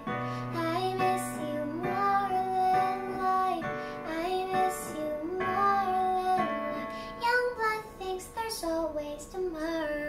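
A young girl singing with long held notes, accompanying herself on a Casio electronic keyboard playing sustained chords.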